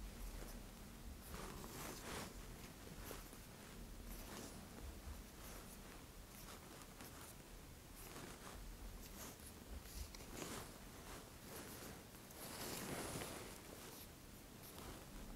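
Faint, close soft scratching of a marker pen drawing short marks on bare skin, in irregular strokes, with fingertips brushing and pressing on the skin; the longest, loudest stroke comes near the end.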